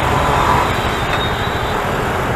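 Steady rush of wind, engine and road noise from a two-wheeler riding through city traffic, the wind buffeting the microphone.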